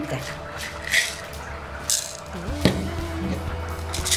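Ground pepper shaken from a small spice jar into a plastic blender beaker, a few short shaking rasps, with music playing underneath.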